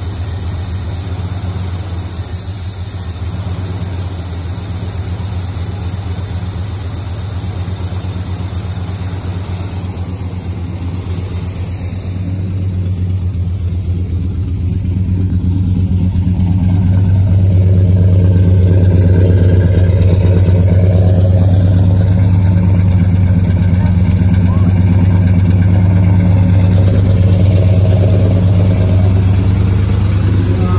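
The freshly rebuilt V8 of a 1977 GMC Sierra runs at a steady idle, kept going on fuel squirted into the carburetor from a spray bottle because fuel may not yet be reaching it from the tank. The engine gets louder about halfway through and holds there.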